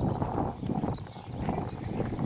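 Footsteps on a dirt road, irregular steps over a low rumble of wind and handling noise on a phone microphone, with a brief lull about a second in.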